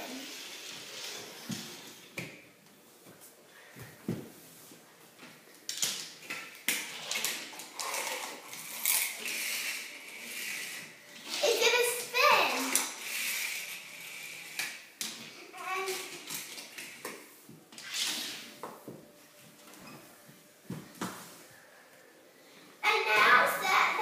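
Children's voices, mostly quiet, with scattered clicks and rustles of plastic toys being handled on a wooden floor; a louder stretch of child speech comes about midway.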